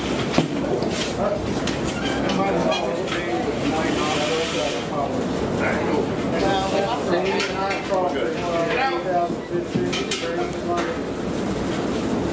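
Several people talking at once while boiled crawfish clatter out of a perforated metal boiling basket onto a newspaper-covered table, with a sharp knock about half a second in.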